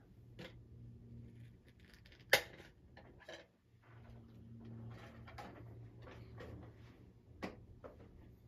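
Plastic clicks and knocks from handling a large multi-disc DVD case to take out a disc, the sharpest snap a little over two seconds in and a cluster of smaller clicks soon after. A low steady hum sits underneath.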